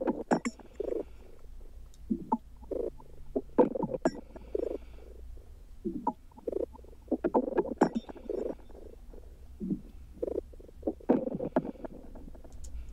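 Soloed percussion group of a minimal tech house track playing: short, mostly dry percussion hits in an uneven rolling pattern, with the automated echo effects just starting to be heard on them.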